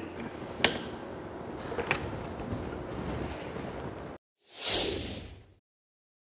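Plastic circuit breaker being pushed back into a transfer switch panel, with quiet handling noise and two sharp clicks, about half a second and two seconds in. The sound then cuts out and a louder whoosh transition effect sweeps through about five seconds in.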